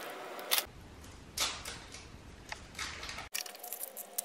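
Shredded cheese being sprinkled by hand from a plastic bag over food, with a few short rustles and crinkles; near the end it gives way to a quieter stretch with a faint steady tone.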